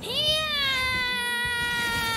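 One long, high-pitched yell from a voice. It rises sharply at the start, then slides slowly down in pitch and holds without a break.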